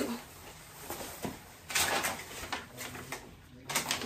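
Rustling and small knocks from handling a quilted nylon puffer jacket and a sheet of paper, with one louder rustle about two seconds in.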